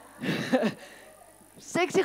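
A short, breathy vocal sound from a woman early on, like a puff of breath or a brief laugh. Speech starts near the end.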